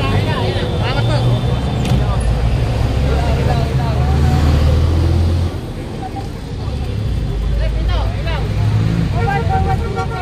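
Low engine rumble of street traffic, with a heavy vehicle loudest until a little past halfway and then easing off.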